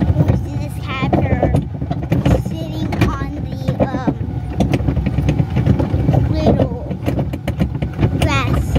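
Plastic barrel cars of a towed barrel train rumbling and rattling as they roll over a bumpy dirt track, with knocks and clatters throughout. Bits of voices come through the noise.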